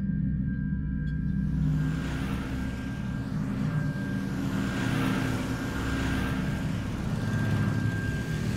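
A group of motorcycles riding past one after another, starting about a second and a half in, their engine noise swelling and fading as each one goes by, over a low sustained musical drone.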